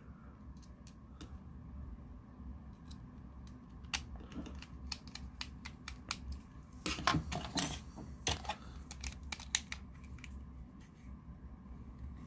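Small screws being driven into a TV remote's back cover with a precision screwdriver. There are scattered light clicks and scrapes, with a busier cluster about seven seconds in, over a faint low hum.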